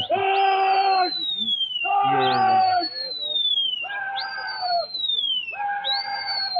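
Pigeon flyers calling to their flock in the air: a man shouts a long drawn-out "ya lalla" about every two seconds, about four times, in turn with long whistles that jump up and slide slowly down in pitch.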